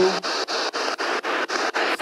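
P-SB7 spirit box sweeping through radio stations: static chopped into short bursts about four times a second.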